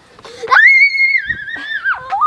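A young girl's long, high-pitched scream. It leaps up sharply about half a second in, holds high for over a second, then sags and drops away near the end.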